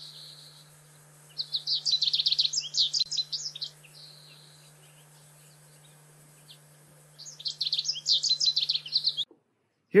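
American goldfinch singing a territorial song: two bouts of rapid high notes, each about two seconds long, the first a little over a second in and the second about seven seconds in, with a few single notes between. A steady low hum runs beneath.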